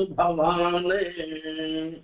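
A man chanting verse in a slow, melodic recitation, holding each note steadily, in the style of Sanskrit sloka recitation.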